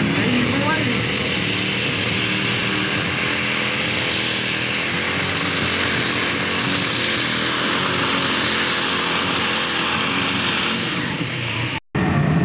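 Super stock pulling tractor's turbocharged diesel engine at full power under load, pulling the sled: a high turbo whine climbs in pitch over the first half second, holds steady over the loud engine noise, and falls away near the end. The sound cuts off abruptly just before the end.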